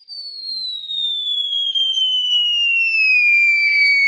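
A long whistle-like sound effect falling slowly and steadily in pitch, with a fainter tone rising beneath it: a comic knockout effect for a boxer laid out on the ground.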